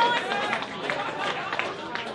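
A protest crowd shouting and talking over one another, the tail of a loud shout trailing into overlapping voices, with a few short clicks.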